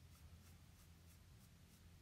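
Near silence with faint scratching: a toothbrush's bristles rubbing over dried liquid latex on the skin, lifting it into flakes for a dry, flaky skin effect. A low steady hum sits underneath.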